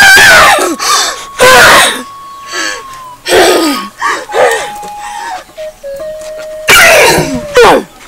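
Loud, harsh vocal outbursts from a woman, about four of them, over background music holding long, steady notes.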